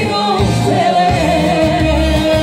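Band music with singing over a steady bass beat; a long held melody note sounds through the second half.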